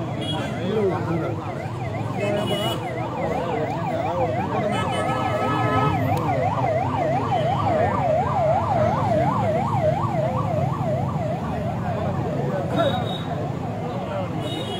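Emergency vehicle siren sounding in a fast up-and-down warble, about three sweeps a second, loudest in the middle of the stretch and fading near the end. A crowd's voices murmur underneath.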